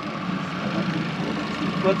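Boat engine running steadily at slow trolling speed: a constant hum with a faint high whine, and no change in pitch.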